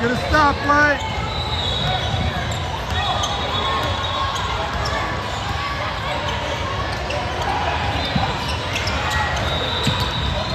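A basketball being dribbled on a hardwood court, against the steady murmur of a crowded hall with several games going on. Two short, loud pitched sounds come near the start.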